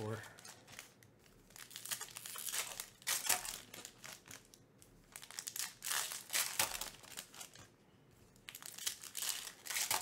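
Foil baseball card pack wrappers being crinkled and torn open by hand. The sound comes in three spells of crackling, about two, six and nine seconds in, with quieter handling between them.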